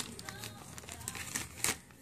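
Faint crinkling of a paper instruction sheet being handled, with scattered light clicks and one sharper click near the end.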